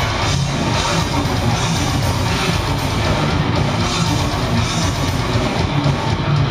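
Technical death metal band playing live: distorted guitars and bass with fast drums, heard loud and dense through a crowd-held recorder.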